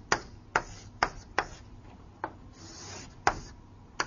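Writing on a board: about six sharp taps of the writing tip striking the board, with a short scratchy stroke about two and a half seconds in.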